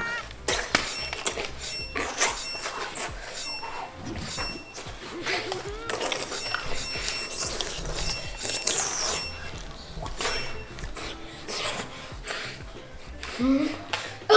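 A run of knocks and clattering from a child playing roughly with a toy, with short high beeps and some music mixed in.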